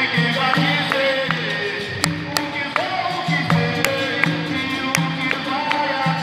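Capoeira roda music: berimbaus playing a repeating rhythm on a low note, with pandeiros and an atabaque drum, under singing.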